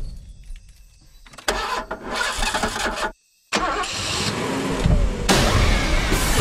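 An old pickup truck's engine cranking and catching about a second and a half in. It cuts off abruptly into a moment of dead silence, then the sound builds back up and grows loud near the end.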